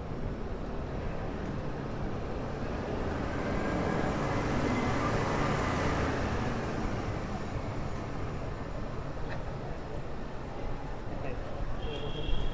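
City street traffic with a vehicle passing, its noise swelling to a peak around the middle and fading away, over a steady background of passersby talking.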